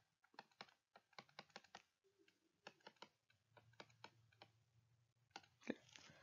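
Near silence with faint, irregular clicks and taps, a stylus tapping and dragging on a tablet screen as handwriting is written.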